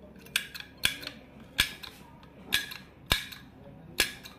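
Hard disk drive's head actuator arm swung back and forth by hand over the open platter, giving a sharp metallic click at each swing: about six clicks, irregularly spaced.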